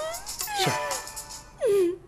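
A mobile phone ringing with a musical ringtone. Near the end comes a short, loud, meow-like call that falls in pitch.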